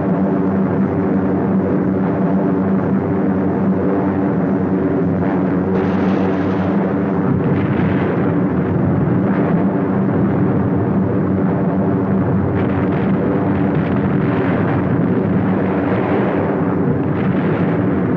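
Heavy bombers' piston engines droning steadily and evenly, with several short swells of rougher noise over the drone in the middle and later part.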